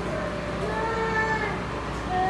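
Sheep bleating: one wavering call about a second long, starting about half a second in, over a steady low hum.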